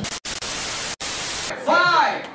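TV static hiss used as an editing transition, broken twice by brief silences. About one and a half seconds in it cuts to a crowd shouting.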